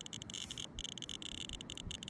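RadiaCode RC-102 radiation detector clicking rapidly and irregularly, high-pitched ticks that each mark a detected count. It is held against uranium-bearing copper shale and reads about half a microsievert per hour: elevated radiation.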